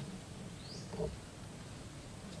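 A bird calling, one short rising chirp just before the middle, over faint outdoor background. A brief low sound comes about a second in.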